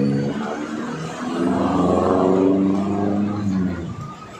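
Large diesel bus engine running close by with a deep roar, its pitch swelling and then falling over the last couple of seconds as it revs down.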